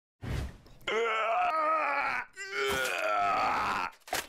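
A voice groaning: a brief sound, then two long drawn-out groans of a second and more each, the pitch wavering, the second one higher.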